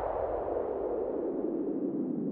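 Electronic whoosh sound effect: a band of noise sliding steadily downward in pitch, a falling sweep with no beat under it.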